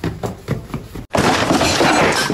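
About a second of faint clicking, then a loud, harsh crash-like noise that starts abruptly about a second in and is cut off sharply by an edit.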